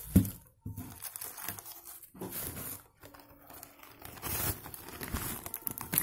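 Rustling and crinkling of a glittery drawstring pouch as it is handled and opened, in irregular bursts with brief pauses.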